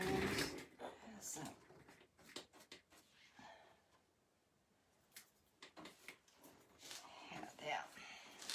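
Faint scattered clicks and light knocks of small objects being handled on a work surface, with a few quiet murmured words.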